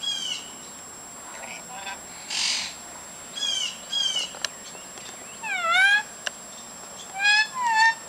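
Lorikeets, including a Duyvenbode's lory, chattering: a string of short calls that swoop down and up in pitch, with a harsh hissing screech about two and a half seconds in. The loudest calls come near six seconds and near the end.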